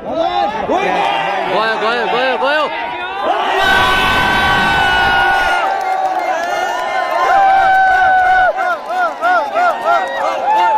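Cricket stadium crowd cheering and shouting together, with quick repeated rising-and-falling shouts for the first few seconds and then long drawn-out cries.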